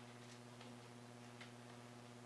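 Near silence under a steady low hum, with a few faint, brief clicks of press camera shutters.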